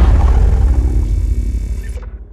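Deep rumble of a logo sting's boom, fading out steadily.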